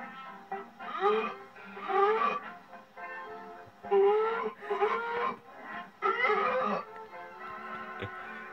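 Old black-and-white film soundtrack played from a TV screen: steady background music with about five short, loud, rising wailing calls over it.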